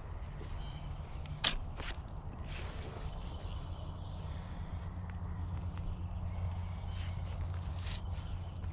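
A shovel digging into soft compost and wood-chip mulch: two sharp strikes or scrapes of the blade about a second and a half in, then quieter digging, over a steady low rumble.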